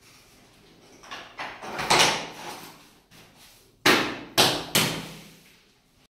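Loose wooden parquet blocks clattering and knocking as they are handled: a longer clatter about two seconds in, then three sharp knocks in quick succession near the end.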